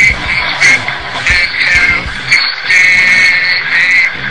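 A song with a shrill, strained, wailing voice over music, sung to sound like tormented souls screaming. It is loud and continuous, with a brief dip about two and a half seconds in.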